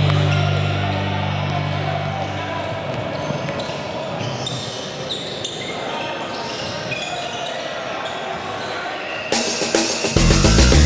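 Live court sound of a basketball game in a gym hall: ball bounces, short high shoe squeaks and players' voices echoing. Rock music fades out at the start and comes back in loud near the end.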